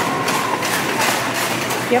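Shopping cart rattling as it rolls along a supermarket floor, with voices in the store around it.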